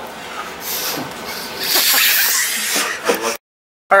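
A person blowing hard into the valve of an inflatable beach ball: a short breathy rush of air, then a longer, stronger one. The sound cuts off suddenly shortly before the end.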